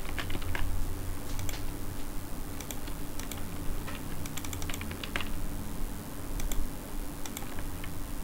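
Typing on a computer keyboard: irregular keystrokes, some in quick runs, over a steady low hum.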